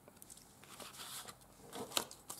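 Paper and card being handled: faint rustling and sliding of thin card against paper pages, with one sharp tap near the end.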